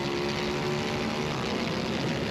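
Onboard sound of a BMW F 900 R race bike's parallel-twin engine running at steady high revs.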